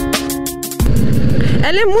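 Background music with a beat cuts off abruptly under a second in, giving way to the low running sound and road noise of a Yamaha NMAX 160's single-cylinder scooter engine on the move. A woman starts speaking near the end.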